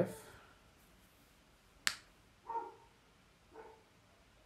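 A single sharp click a little under two seconds in, then two short, faint barks from a dog in the background, about a second apart.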